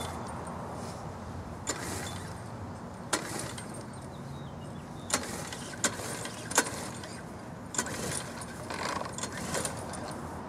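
A gas walk-behind lawn mower's recoil starter cord yanked several times, a short sharp pull sound every second or so, over a steady low outdoor background.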